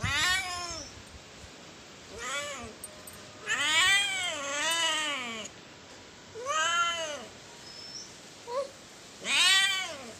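Young orange tabby cat meowing repeatedly in protest while being handled. There are about six drawn-out meows, each rising then falling in pitch, two of them run back to back in the middle, and there is a short chirp shortly before the last meow.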